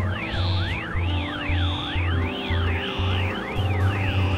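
Experimental electronic music: several overlapping synthesized tones glide up and down like sirens, over a bass pulse about twice a second and held drone tones.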